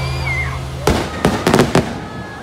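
The show's music fades out. About a second in, five or six sharp firework bangs go off in quick succession.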